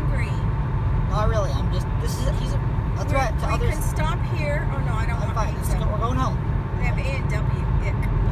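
Steady low road and engine rumble inside a moving car's cabin on a highway, with voices talking over it.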